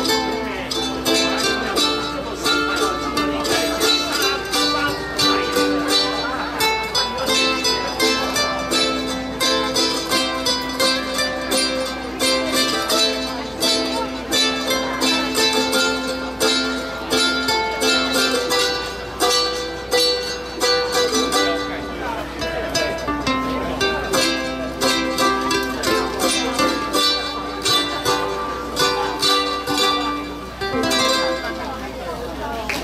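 Ukulele ensemble strumming a song together in a steady rhythm, with a voice singing over the chords.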